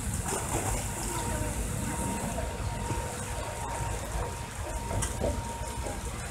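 Outdoor poolside ambience: a steady low rumble with faint distant voices and a thin, steady high-pitched hum.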